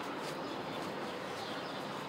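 Steady, faint background hiss of the open-air surroundings, with no distinct events.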